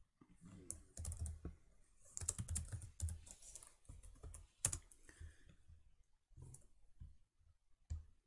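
Typing on a computer keyboard: quick runs of faint key clicks, with a single louder keystroke a little past the middle.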